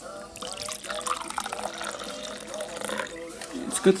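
Liquid pouring from a 1970s Aladdin Stanley vacuum thermos into a steel cup, a steady splashing stream that starts just after the beginning and tails off shortly before the end.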